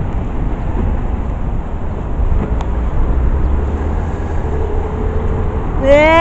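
Steady low rumble of city street traffic, with wind on the microphone.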